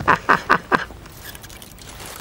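A man laughing hard in a rapid run of loud ha-ha bursts that breaks off about a second in.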